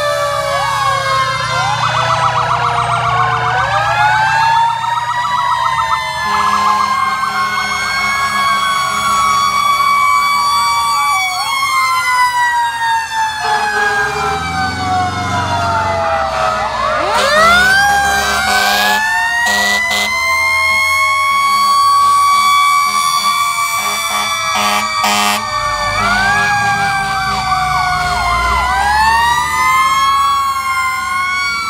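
Several fire-truck sirens sounding at once: electronic wail and yelp sirens warbling over the slow wind-up and coast-down of a mechanical Federal Q siren, with steady air-horn blasts in stretches and truck engines underneath.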